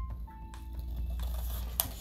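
Scissors cutting through construction paper, with one sharp snip near the end, over soft background music.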